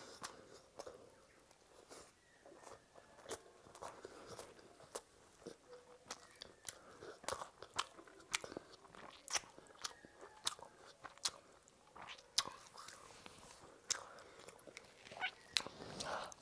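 Close-miked eating sounds: chewing with many sharp wet mouth clicks as fried potato chop and soaked rice (panta bhat) are bitten, mixed by hand and eaten.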